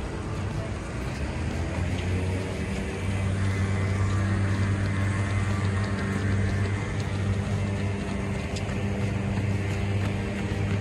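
A steady, low engine hum holding one unchanging pitch, which gets louder about three seconds in.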